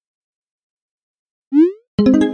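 Silence, then near the end a short rising electronic chirp, a message-pop sound effect as a new text bubble appears. The onset of a brighter, ringing tone follows right at the end.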